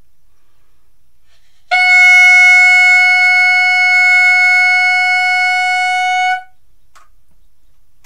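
Clarinet mouthpiece and barrel, without the rest of the instrument, blown as one long steady note of about four and a half seconds, starting near two seconds in. The note sounds a concert F sharp, the pitch this test aims for to show a sound embouchure and setup.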